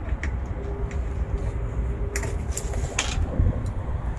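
Metal hook of the tonneau cover's pull strap clicking and clinking against the truck bed's tie-down ring as it is worked loose, several sharp clicks over a steady low rumble of wind on the microphone.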